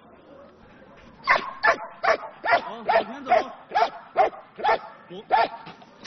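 A Kunming police dog barking repeatedly, about ten sharp barks a little over two a second, starting about a second in and stopping shortly before the end. It is guard barking at a held-at-bay target with raised hands.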